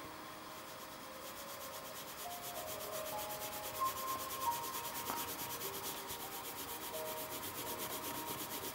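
Pencil lead rubbing back and forth on paper, shading an area with an even tone. The rubbing is steady and faint, getting a little louder from about two seconds in.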